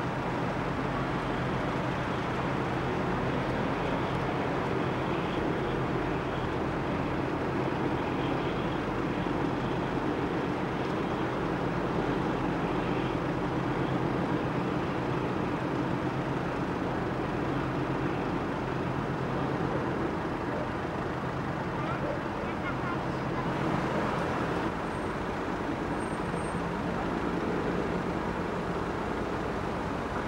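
Steady outdoor background hum of distant road traffic and harbour noise, even throughout, with faint voices in it.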